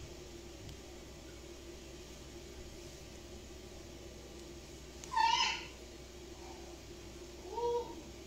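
Two short, high-pitched calls over a faint steady hum: one about five seconds in, falling in pitch, and a shorter rising one near the end.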